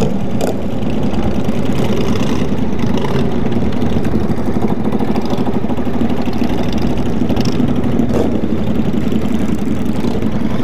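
Cruiser motorcycle's V-twin engine running steadily at low speed as the bike rolls along, with other motorcycles close ahead. Two brief ticks cut through, about half a second in and about eight seconds in.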